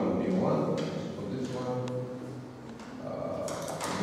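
A man's voice, low and indistinct, with a short held hum in the middle. Near the end come a few short scratchy strokes of a marker on a whiteboard.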